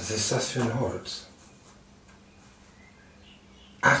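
A man's voice: a short utterance in the first second and a sigh-like 'Ach' at the very end, with a quiet room and a faint steady low hum in between.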